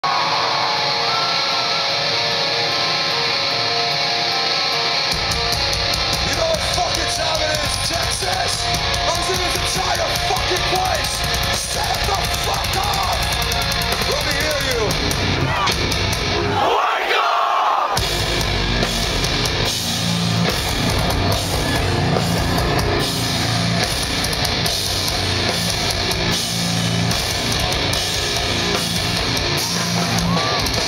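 Live rock band playing loudly through a festival PA: electric guitars, drums and vocals. The bass comes in a few seconds in, drops out for about a second in the middle, then the full band crashes back in.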